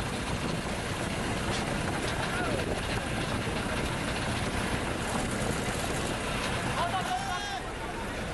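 Steady low rumble of a boat's motor mixed with water and wind noise, with indistinct voices of people on the boats, one calling out near the end.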